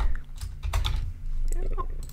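Computer keyboard typing: a few scattered keystroke clicks.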